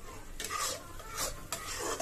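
Metal spatula stirring and scraping thick tomato-onion paste frying in an iron kadhai: about three rasping strokes against the pan.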